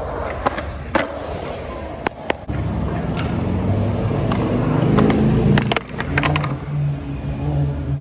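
Skateboard wheels rolling on a concrete bowl, a rumble that grows louder from about two and a half seconds in. Sharp clacks of the board striking the concrete cut through it, several in quick succession past the middle.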